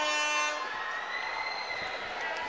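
Round-start buzzer sounding once, a short horn-like blast of under a second, signalling the start of the first round of a boxing bout. A fainter high steady tone hangs on after it.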